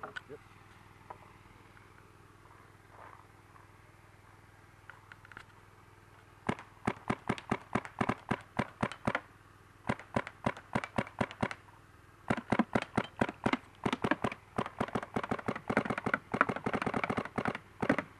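Electronic paintball marker firing rapid strings of shots, about six to ten a second, in three bursts starting around six and a half seconds in. Before the shooting, a few light clicks as the markers are handled.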